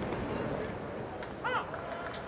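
Steady murmur of a ballpark crowd, with a commentator's short "oh" about one and a half seconds in.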